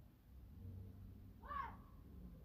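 A single brief high-pitched call that rises and then falls in pitch, about one and a half seconds in, over faint room tone.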